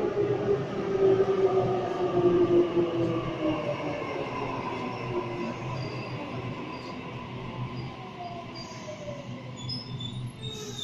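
Sydney Trains Waratah (A set) double-deck electric train pulling into the platform and slowing to a stop. Its traction motors whine in several tones that fall steadily in pitch as it slows, over a rumble of wheels on rail, loudest in the first few seconds.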